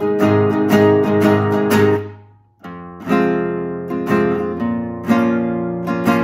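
Solo acoustic guitar strumming chords. The playing breaks off briefly about two seconds in, then resumes with a chord roughly once a second.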